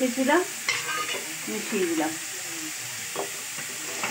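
Leafy greens and potato pieces sizzling in a metal kadai as a metal spatula stirs and scrapes them, with a few short clicks of the spatula on the pan. A brief rising pitched sound at the very start is the loudest moment.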